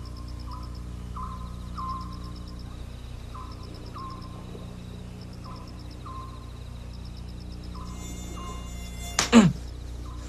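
Night ambience of insects chirping: a short chirp repeating about every half-second over faint high trills and a steady low hum. Near the end comes one sudden, loud sweep falling steeply in pitch.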